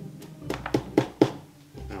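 A quick run of about five sharp taps, roughly four a second, then a pause, with soft music underneath.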